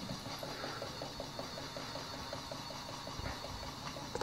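Small battery-powered toy hamster's motor running, with a rapid, even ticking.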